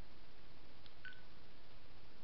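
Steady hiss of the recording, with one short, faint, high-pitched beep about a second in.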